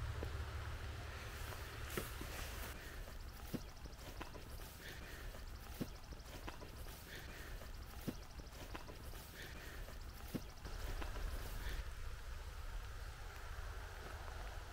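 Quiet outdoor ambience: a steady low rumble, typical of wind on the microphone, with a faint hiss and a few scattered faint ticks.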